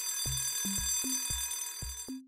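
Alarm-clock bell ringing as a sound effect at the end of the quiz countdown, over children's background music with a steady bass beat. The ringing stops about two seconds in.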